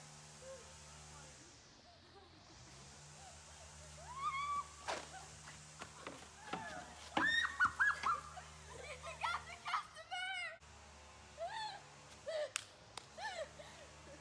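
Girls' high-pitched squeals, yelps and laughter in short bursts, starting about four seconds in after a faint quiet stretch, loudest a little past the middle.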